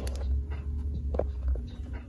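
Low rumble of a handheld camera microphone being moved about, with a few light taps of fingers on the plastic connector plate of a capsule toy vending machine.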